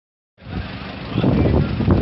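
Street noise starting about half a second in: a steady low rumble with people's voices talking over it.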